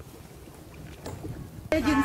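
Faint, steady outdoor noise over open water, mostly wind and water with a low rumble. A woman starts speaking near the end.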